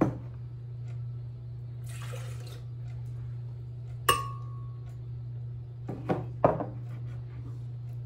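Ingredients being tipped into a glass blender jar: a short pouring hiss, then a cup clinking against the glass jar with a brief ring about halfway through, followed by a few knocks. A steady low hum runs underneath.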